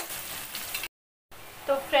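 Chopped onions sizzling in hot oil in a kadhai while a spatula stirs them, frying until brown; the sizzle stops abruptly just under a second in.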